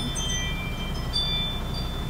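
Semi-truck diesel engine idling with a steady low hum, while thin, high, chime-like ringing tones at several pitches come and go over it.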